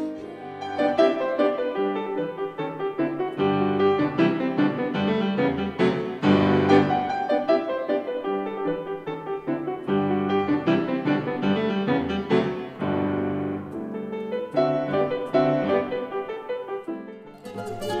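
Grand piano played solo, a continuous flow of quick notes over bass chords, briefly falling away near the end.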